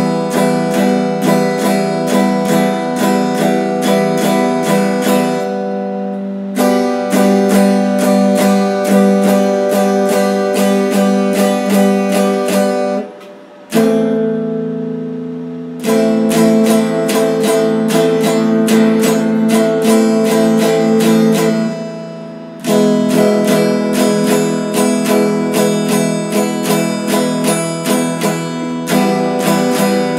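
Stratocaster-style electric guitar strummed quickly in chords, several strokes a second, changing chord every few seconds, with one short dip in the playing about halfway through.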